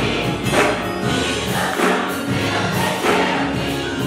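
Gospel choir singing with instrumental accompaniment over a steady beat.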